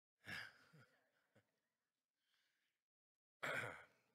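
A man sighing twice into a microphone: a breathy, partly voiced sigh just after the start and another breathy exhale near the end.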